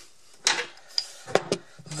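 Handling noise as a camera is set down and a cord moved aside: four short clicks and knocks within about a second, the first the loudest.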